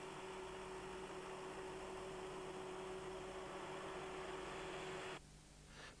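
HARDI airblast mistblower's fan running, heard faintly as a steady hiss with a steady hum, cutting off abruptly about five seconds in.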